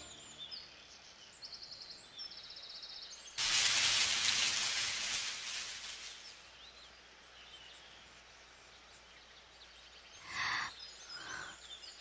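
Birds chirping and trilling over outdoor ambience. About three seconds in, a loud rush of noise starts suddenly and fades away over the next three seconds. Two short bursts of sound come near the end.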